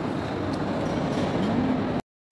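Steady background noise of a large indoor shopping mall, with a faint distant voice near the end.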